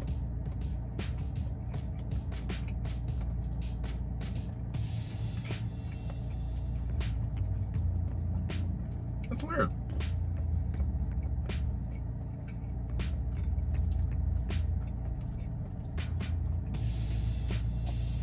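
Close-up chewing of a cheeseburger bite topped with crispy onion strings: many sharp mouth clicks and crunches, with a brief hum from the eater about halfway through. Soft background music with a steady low bass runs underneath.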